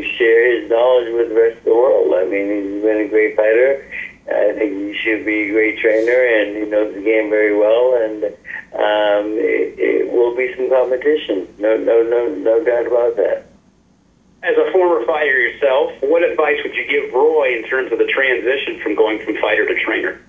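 Speech only: a person talking over a conference-call phone line, with one short pause about two-thirds of the way through.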